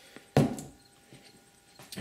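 A metal aerosol can of Great Stuff spray foam set down on a wooden workbench: one sharp knock about a third of a second in, dying away quickly.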